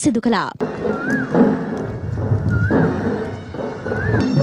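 Ceremonial music with a reed pipe that repeats a short wavering phrase about every one and a half seconds, over a dense, loud background din. A narrator's voice ends about half a second in.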